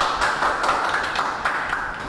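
Hands clapping: a dense, quick run of claps that cuts off sharply at the end, applauding a correct answer.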